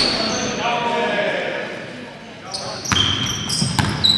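Basketball game sounds in a gymnasium: sneakers squeaking on the hardwood court and a basketball bouncing, with players' voices, echoing in the large hall. The squeaks and bounces come thickest in the last second or so.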